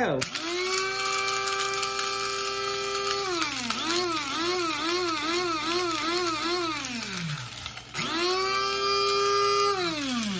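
Small electric blade coffee grinder chopping dried beef bouillon. Its motor spins up and runs at a steady pitch, then its pitch dips and rises about twice a second for a few seconds before it winds down and stops. About eight seconds in it starts again and runs steadily.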